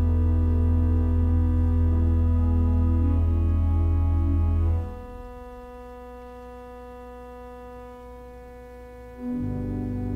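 Church organ playing sustained chords over a deep pedal bass. About halfway through the bass drops out and the organ goes quieter on held notes, then the bass and a moving line come back near the end.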